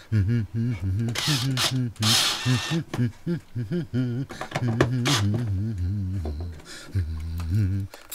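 A man's voice talking indistinctly, broken by two short hissy noises in the first few seconds.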